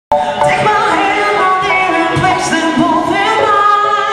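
A woman singing a pop song live into a microphone over a band with a drum kit, the melody sliding and held between notes.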